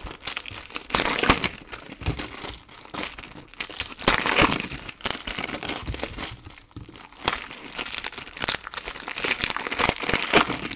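Foil wrappers of Topps Chrome trading-card packs crinkling and being torn open by hand, in irregular crackles, loudest about four seconds in.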